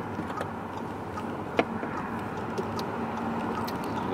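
Steady road and engine noise inside a moving car's cabin, with one sharp click about one and a half seconds in.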